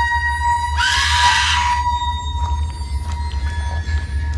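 Film sound design: a heart monitor's steady flatline tone held over a low rumbling drone. About a second in, a loud harsh burst with a falling pitch cuts across it for under a second.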